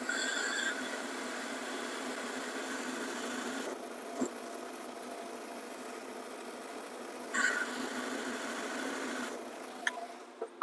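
Metal lathe running, its cutting tool taking a turning pass on the end of a steel bar to bring it down to a shoulder diameter. The cut gives a brief high squeal as it begins and again about seven and a half seconds in, and the cutting noise stops shortly before the end.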